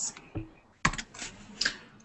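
A few computer keyboard keystrokes, sharp clicks picked up through a video-call microphone, the loudest a little under a second in, over faint room noise.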